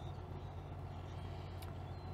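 A steady low drone of machinery, with a faint click about one and a half seconds in.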